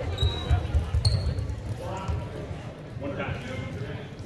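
Gymnasium crowd and player voices talking during a stoppage in play, with scattered low thuds. There are two short, high sneaker squeaks on the hardwood floor, one near the start and another about a second in.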